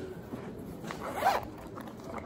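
Zipper on a fabric pencil case being pulled in one quick stroke about a second in.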